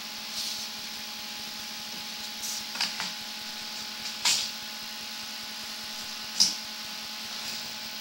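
Steady electrical hum from a sewer inspection camera rig, with a handful of short scraping rustles as the camera's push cable is drawn back through the drain pipe. The loudest scrapes come about four and six seconds in.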